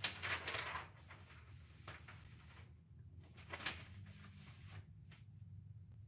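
Large sheets of sublimation paper being slid and smoothed by hand on a heat press platen: paper rustling in short bursts, the strongest at the start and another about three and a half seconds in, over a low steady hum.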